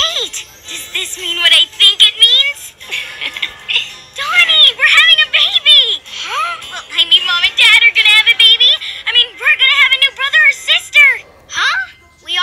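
High-pitched cartoon voices squealing and shrieking excitedly in overlapping bursts, with music underneath.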